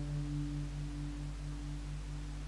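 The final guitar chord of the song ringing out, its low notes sustaining with an even wavering pulse, over a steady low hum.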